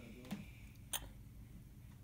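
Quiet room with two faint, short sounds: a soft one about a third of a second in and a sharp click about a second in.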